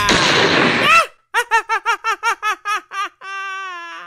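A man doing a Heath Ledger-style Joker voice, laughing: a run of quick, short 'ha's, about five a second, ending in one long held 'haaa' that falls slightly in pitch. The first second of laughter sits over a loud burst of noise.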